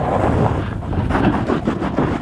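Snowboard carving fast down a steep snow slope: steady wind noise on the microphone over the hiss and scrape of the board through the snow.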